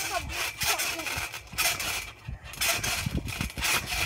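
Trampoline mat flexing under a phone lying on it as someone bounces: repeated rough rubbing and scraping noises with dull thumps, coming irregularly several times a second.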